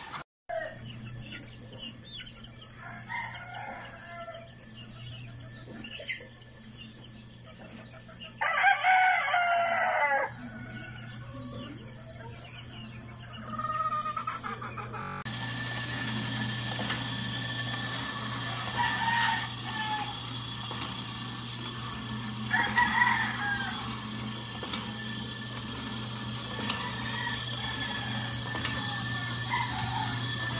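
Gamefowl rooster crowing: one loud crow about a third of the way in and a shorter, fainter call about two-thirds of the way in, with scattered smaller chicken calls over a steady low hum.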